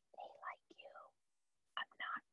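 Very faint whispered or breathy speech, a few quiet syllables in the first second and another near the end.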